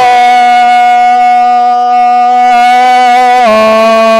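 A man's chanting voice, amplified through a microphone, holding one long steady note for about three and a half seconds, then dropping to a lower held note near the end.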